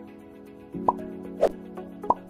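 Light background music with two short, rising pop sound effects, one about a second in and another half a second later, as the quiz screen changes to the next question.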